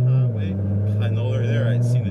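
Car engine drone heard from inside the cabin while driving, a steady low hum that eases down a little in pitch about a third of a second in.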